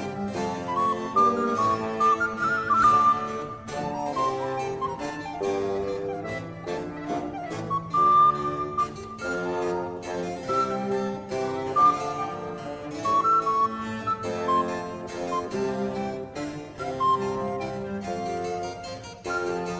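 Early-music ensemble playing an instrumental variation: harpsichord plucking a busy accompaniment under a recorder and baroque violin melody, with viola da gamba and dulcian on the bass line.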